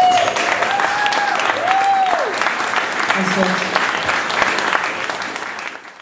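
A small audience applauding and cheering at the end of a song, with a few high whoops in the first two seconds. The sound fades out at the very end.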